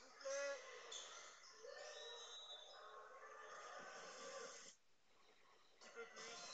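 Faint sound of a volleyball match replay playing in the background, with hall crowd noise and voices. It breaks off into near silence about a second before the end.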